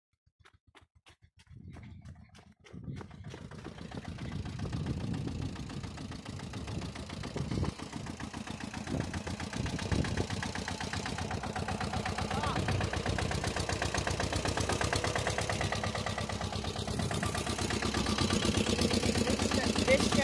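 Pasquali 991 tractor's diesel engine running as the tractor drives around. Its separate firing strokes are faint at first, then it becomes a steady, stronger engine sound that grows louder as the tractor comes closer.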